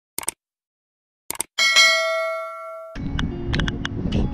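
Two short click sound effects, then a single bell ding that rings out and fades over about a second and a half: the sound of a subscribe-button animation. About three seconds in it gives way to steady outdoor background noise with a few small clicks.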